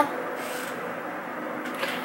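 Steady background room noise: a low hiss with a faint constant hum, with no distinct event.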